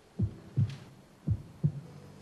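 Heartbeat: two slow lub-dub double thumps, each pair about a second apart.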